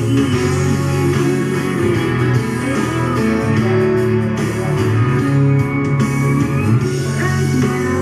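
A country-pop song with guitar playing on an FM radio broadcast, loud and continuous.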